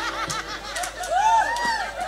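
A man laughing into a microphone, a run of rising-and-falling 'ha' sounds that grows loudest a little past the middle.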